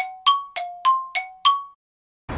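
Edited-in sound effect for animated title text, letters popping onto the screen: a quick run of short, bright metallic pings, about three a second, alternating between a lower and a higher pitch. It stops shortly before the end.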